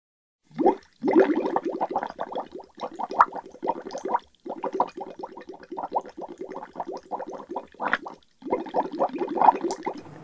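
Water bubbling: a dense stream of bubbles making quick rising blips, with a few short pauses.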